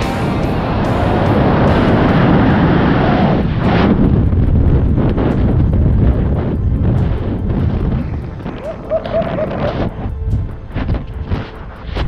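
Wind rushing hard over the camera microphone during a tandem skydive freefall and canopy opening, then easing after about eight seconds into quieter, gusty buffeting under the parachute.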